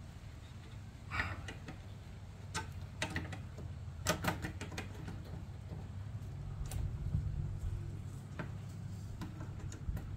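Metal side cutters clicking and scraping against a short cotter pin in a bicycle's rear disc brake caliper, in irregular sharp clicks.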